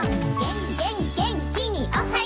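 Cheerful children's TV theme song: bouncy music with a sung melody whose phrases swoop up and down.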